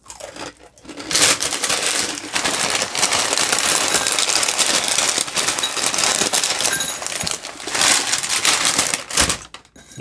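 Clear plastic inner bag of crunchy muesli crinkling and rustling as it is handled, for about eight seconds.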